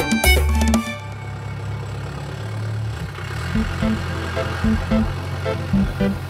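Upbeat background music with drums stops about a second in. It gives way to the steady low hum of a car driving, heard from inside the cabin.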